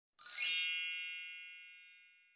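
A single bright chime sound effect, struck about a quarter second in, with many high ringing tones that fade out slowly.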